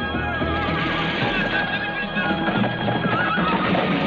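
Horses galloping, with a horse whinnying twice (about half a second in and again near the end), over loud orchestral film score music.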